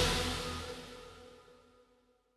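The last chord of a slowed, reverb-heavy pop-punk song ringing out, its reverb tail dying away over about a second and a half.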